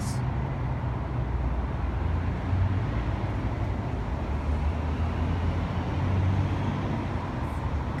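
Steady low rumble of urban street traffic, with no single sound standing out.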